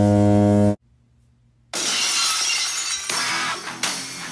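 A loud, steady electronic error buzzer cuts off abruptly under a second in. After about a second of near silence, a sudden crash of shattering glass launches loud rock entrance music.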